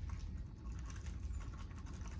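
Faint, quick, irregular light ticks and patter of bacon bits being shaken out of a small plastic container onto soup ingredients in a cast iron dutch oven.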